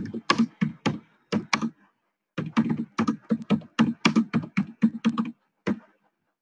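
Typing on a computer keyboard: a run of irregular keystrokes, several a second, with a short pause about two seconds in.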